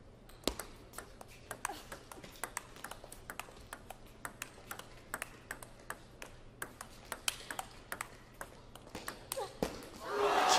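A long table tennis rally: the ball clicks sharply off rackets and table in a quick, even series of strikes, about two to three a second.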